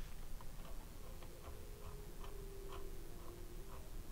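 Soft, fairly regular ticking, about three ticks a second, over a faint steady tone.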